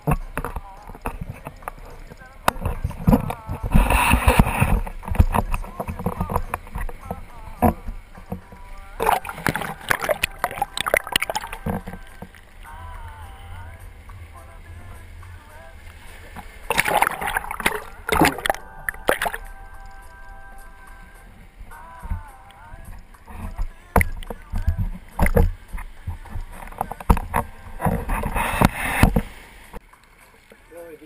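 Seawater splashing and sloshing against an action camera held at the wave surface, in surges about 4, 10, 17 and 28 seconds in, with quieter washing between.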